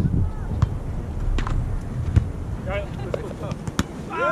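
Wind buffeting the microphone, heaviest at first and then easing, with a few sharp slaps of hands striking a volleyball during a rally and a brief shout from a player.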